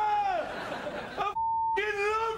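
A man's long, drawn-out drunken shout of a woman's name, held on one pitch and tailing off about half a second in. A short, pure high beep sounds near the middle, and a second long held shout starts just before the end.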